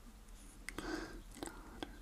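A man's voice murmuring faintly under his breath, with a few small clicks.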